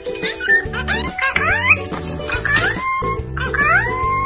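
Yellow Indian ringneck parakeet mimicking speech in a high, squeaky voice, saying "whatcha doing" and then "good girl" near the end, over background music.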